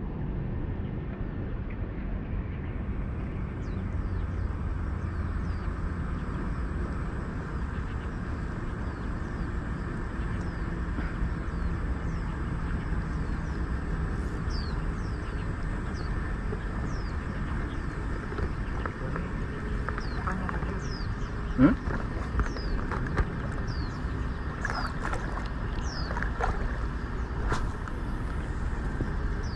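Steady low wind rumble on the microphone, with a bird's short, high, falling chirps repeating every second or so. One brief sharp sound stands out about three-quarters of the way through.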